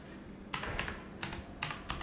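Typing on an HP GK320 mechanical gaming keyboard: a quick run of key clicks starting about half a second in.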